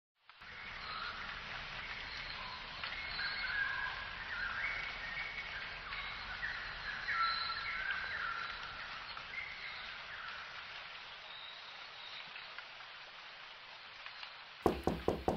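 Faint, high, chirping bird-like calls over a steady background hiss, thinning out and fading near the end.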